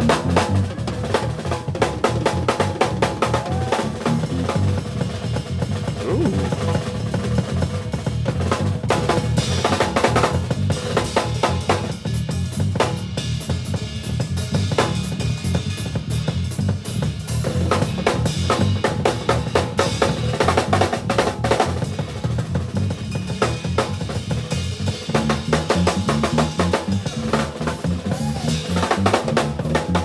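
A drummer soloing on a small drum kit, with fast strokes on the drums and cymbals throughout. Underneath, a bass guitar keeps a steady groove of low notes that run up and down near the end.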